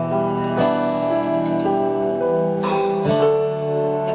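A live band playing between sung lines: acoustic guitar strumming over sustained keyboard chords, with the chord changing a few times.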